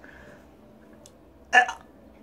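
A man gagging once in disgust at the food he is tasting: a single short, sharp, hiccup-like retch about a second and a half in.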